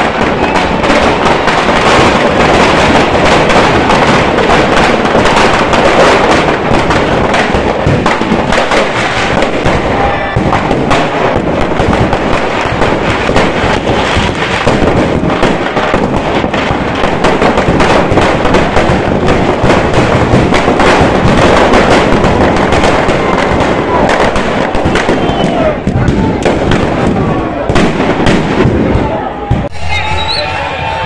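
Firecrackers packed inside a burning Ravan effigy going off in a loud, continuous crackle of bangs.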